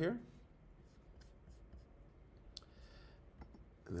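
A few faint, irregular clicks with light rubbing as a computer is operated to start a slideshow, over quiet room tone.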